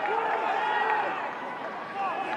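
Indistinct voices, short shouts and calls, over steady stadium crowd noise.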